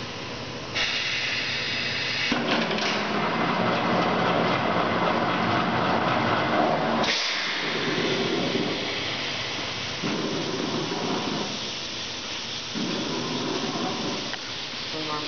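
Rebuilt Richmond drum dedenter running a repair cycle: compressed air hissing through its pneumatic system as the cylinders swing the perforated clamping arms shut around a steel drum, over steady machine noise. The hiss starts about a second in and cuts off suddenly about seven seconds in.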